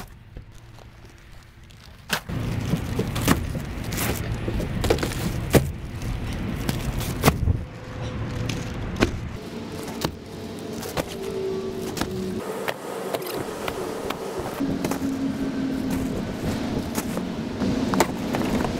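Heavy bags of salt and potting soil being dropped and slid into a Ford F-150 Lightning's front trunk and pickup bed: a run of sharp knocks and thuds with plastic-bag rustling, starting about two seconds in.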